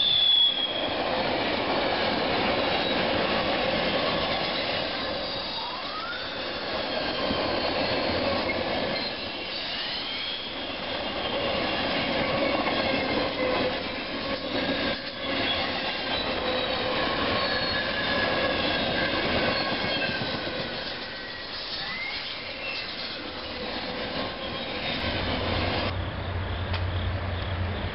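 Double-stack intermodal container train passing at speed: a steady noise of wheels running on the rails, with thin high-pitched wheel squeals that waver and rise over it.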